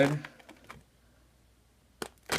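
A spoken word trailing off, then a few faint clicks and near-silent room tone.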